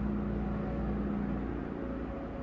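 A steady low mechanical hum and rumble, with a faint tone in it that fades out about a second and a half in.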